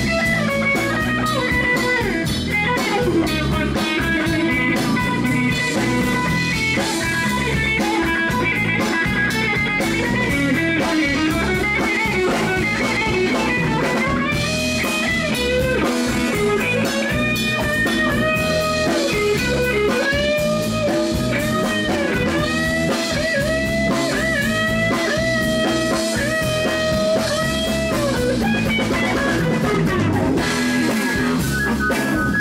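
A live blues-rock band playing with electric and acoustic guitars, bass guitar and drum kit. From about halfway in, a lead line of held, bending notes comes in on top, played on harmonica.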